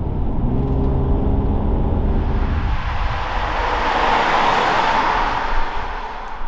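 2012 BMW 535i xDrive sedan with its turbocharged straight-six: first a steady engine hum, then, about halfway through, the car passing by outside, its tyre and road noise swelling to a peak and fading.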